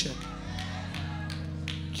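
Soft sustained keyboard chords held under the preaching, moving to new chords about half a second and again about a second in.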